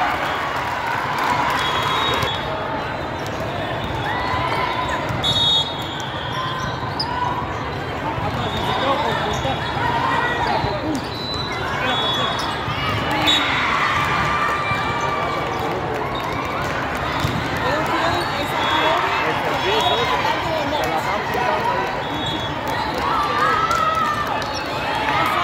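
Volleyball match in a large, echoing sports hall: a constant hubbub of many voices from spectators and players, with sharp slaps of the ball being hit during a rally and several brief high-pitched tones.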